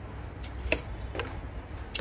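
Handling noises from the plastic housing and end caps of a disassembled JBL Charge 2 speaker: a few light clicks and scrapes, around half a second in, at about one second and just before the end, over a low steady hum.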